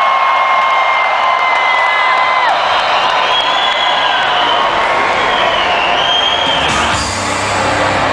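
Electronic dance music at festival volume with a huge crowd cheering and screaming over it. About seven seconds in, a deep bass comes in together with a short loud hiss from a stage CO2 jet firing.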